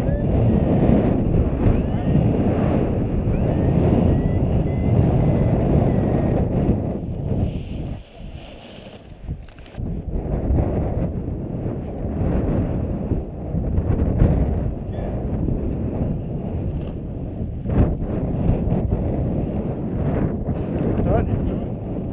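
Strong wind buffeting the microphone of a paraglider pilot's head-mounted camera in flight, a heavy low rumble that drops away briefly about eight seconds in.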